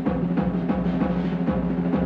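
Swing band drum break: a drum kit struck in a steady pattern of about four strokes a second, over a sustained low note from the band.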